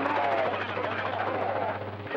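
Another station's CB radio transmission coming through the receiver: distorted, unintelligible speech over a steady low hum. The hum cuts off near the end as the transmission drops.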